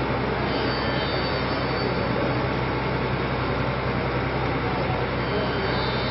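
Steady rushing noise with a low electrical hum underneath, the idle background of a stage microphone and loudspeaker system, with no music playing.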